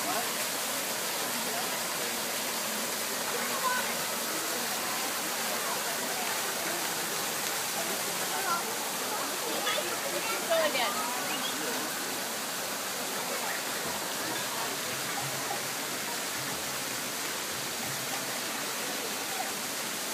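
Steady rushing of water, like a waterfall or stream feature, with a few faint distant voices around the middle.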